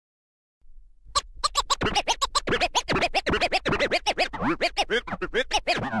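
Turntable scratching: a record is pushed back and forth in rapid strokes, bending a pitched sample up and down several times a second. The strokes start about a second in.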